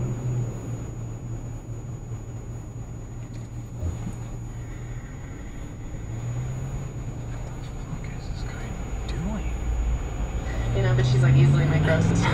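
Car engine idling inside the cabin while stopped at a light, a steady low hum. Near the end it speeds up as the car pulls away, the hum rising in pitch and getting louder.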